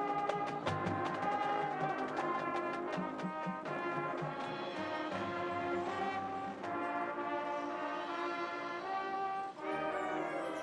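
A high school marching band playing, brass holding full chords over percussion strikes that are dense in the first few seconds. Near the end the band drops out for a moment, then comes back in with a new full chord.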